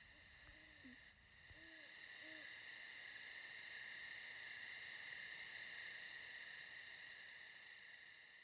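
Night ambience: a steady, fast-pulsing chorus of night insects, with an owl hooting softly about three times in the first few seconds.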